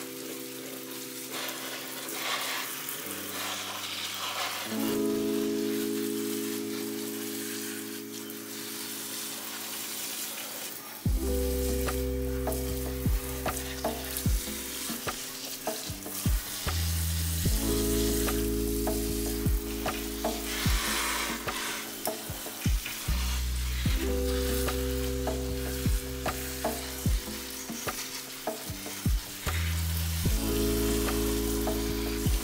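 Water spraying steadily from a kitchen faucet's pull-down sprayer onto potted plants in a sink. Background music plays over it: held chords at first, then a bass line and beat come in about eleven seconds in and become the loudest sound.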